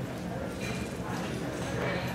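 Hoofbeats of a reining horse stepping on soft arena dirt.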